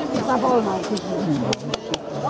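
Overlapping voices of players and spectators calling and chattering during a youth football match, with a few sharp clicks or knocks in the second half.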